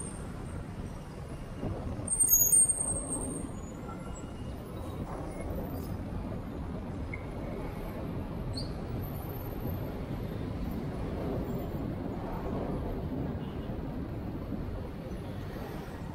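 Steady city road traffic heard from a moving bicycle: cars, vans and motorcycles running in queued traffic alongside. A brief louder burst with a high-pitched edge stands out about two seconds in.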